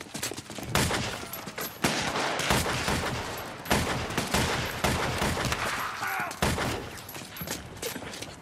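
A handgun shootout: repeated pistol shots fired at uneven intervals, each with a short echo off the street.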